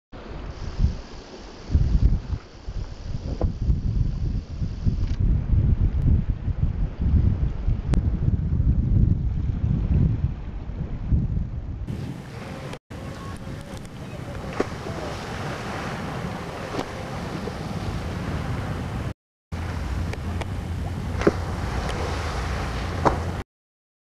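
Gusty wind rumbling on the microphone for about twelve seconds. Then a steady hiss of open water with a low hum, broken twice by brief dropouts.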